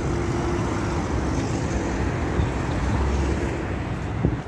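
Street traffic: cars driving past on a multi-lane city road, a steady noise of engines and tyres.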